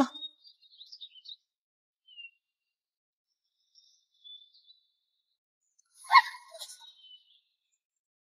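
Faint, scattered bird chirps, then a louder, brief burst of sound about six seconds in.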